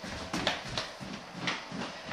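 A puppy's claws and paws tapping on a hardwood floor as it bats at and scrambles after a tennis ball: a quick, irregular run of light taps.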